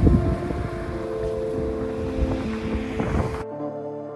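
Background music with steady, sustained notes over outdoor ambient noise, mostly wind on the microphone. The wind noise cuts off suddenly about three and a half seconds in, leaving only the music.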